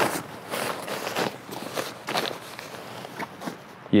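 Fabric of an Edelrid Caddy II rope bag being bunched together by hand: irregular rustling and crumpling in a series of short scrunches.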